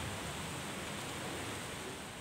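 Steady, even hiss of background ambience with no distinct events, easing off slightly near the end.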